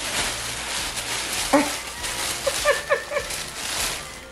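Tissue paper rustling and crinkling as a gift is unwrapped by hand, with a few short, high-pitched vocal squeaks about one and a half seconds in and again near three seconds.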